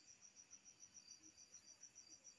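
Faint insect chirping: a high, even pulse repeating about seven times a second.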